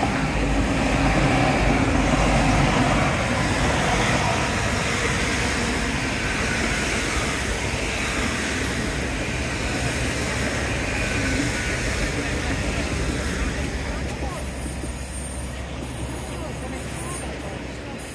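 GWR Hitachi Intercity Express Train passing on diesel power: a steady rumble of engines and wheels on rail, loudest a second or two in, then slowly fading as it draws away.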